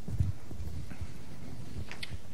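A few soft, low thumps and knocks over quiet room tone, the loudest just after the start and a brief sharper click near the end, like handling noise in a lecture hall.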